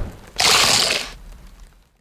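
A short, loud burst of noise starts about half a second in and fades out within about a second: a sound effect for the Doritos logo.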